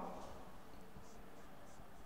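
Faint strokes of a marker writing on a whiteboard, several soft scratches over quiet room noise.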